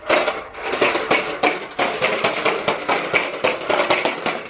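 A toddler's corn-popper push toy rolling across the carpet, the plastic balls inside its clear dome popping and clattering in a rapid, irregular run of clicks.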